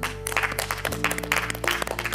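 A small group clapping their hands, a quick irregular patter of claps, over background music.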